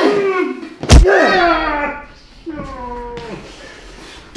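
A sharp thudding blow about a second in, with a person's pained cries and groans falling in pitch around it; a weaker groan near three seconds.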